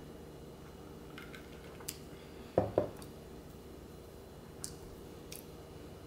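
Faint light clinks of ice in a short lowball glass as a cocktail is picked up and tasted, with a brief low double thud about two and a half seconds in.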